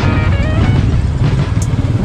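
Royal Enfield motorcycle engines running steadily in a deep low rumble while riding, with background music in the first part.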